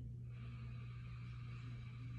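A man's long, deep breath in, starting about a third of a second in and lasting a little over two seconds.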